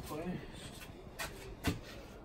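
Two short knocks, about half a second apart, amid light rubbing as painted MDF shelf parts are handled, after a brief murmured voice at the start.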